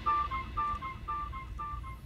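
Background music in a quiet passage: a quick repeating figure of short high notes over a soft low haze.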